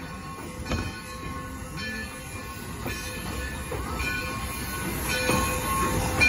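Steam locomotive No. 60 rolling slowly past tender-first, a low rumble with a sharp clank or click about once a second, growing louder as it draws near.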